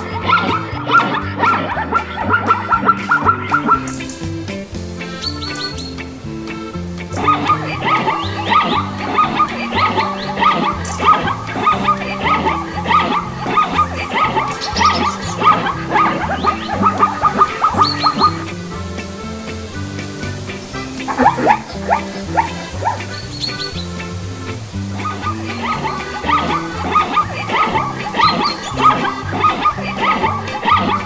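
Zebra barking calls, rapid yipping barks repeated in long bouts with short pauses between them, over background music.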